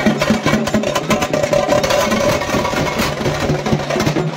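Fast, dense drumming from procession drummers, strike after strike with no break, over a steady low drone.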